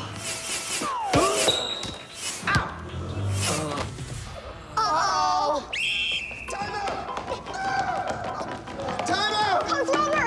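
Basketball-game sounds in a gym: several sharp thuds and knocks in the first four seconds, then voices crying out and exclaiming without clear words.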